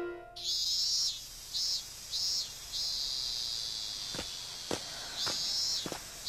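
Insects chirring in repeated on-off bursts, with one longer stretch in the middle. A few soft footsteps fall in the second half. The last notes of mallet-percussion music fade out at the very start.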